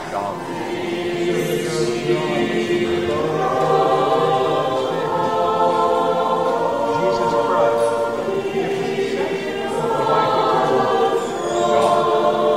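Church choir singing a cappella in slow, sustained chords, as part of an Orthodox Divine Liturgy.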